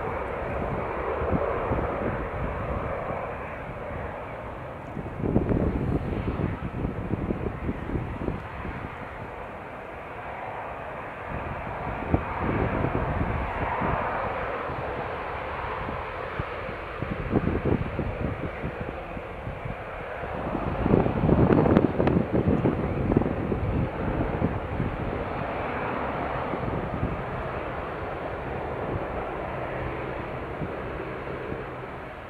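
Jet airliner engine noise, a continuous roar that swells and fades, loudest about two-thirds of the way through.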